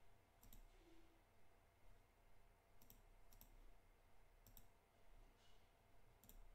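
Faint computer mouse button clicks, four of them spaced a second or so apart, over near-silent room tone.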